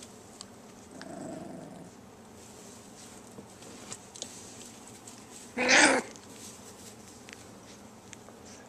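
Young border collie puppies: a soft low growl about a second in, then one loud, short yelp a little past halfway.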